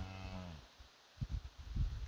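A cow gives a short, low moo to her newborn calf, ending about half a second in. A few low, muffled thumps follow near the end.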